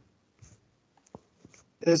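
A few faint clicks and rustles, one sharper click about a second in, then a man's voice answering "yes, yeah" near the end.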